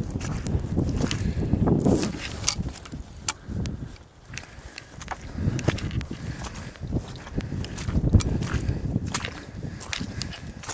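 Footsteps of a person walking through wet grass and heather on boggy ground, an irregular run of brushing and crunching steps over a low rumble on the microphone.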